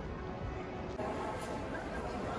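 Outdoor ambience: distant voices and faint background music, steady and well below the level of nearby speech, changing abruptly about a second in.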